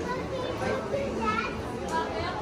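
Background voices of other people in a shop, including high-pitched children's voices, over a steady hubbub; a light click sounds near the end.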